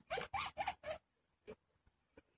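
Mute swan cygnets peeping: four short squeaky calls in quick succession in the first second, then a faint click.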